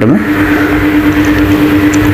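Air spray gun hissing steadily as it sprays paint onto a car door, over a steady low hum.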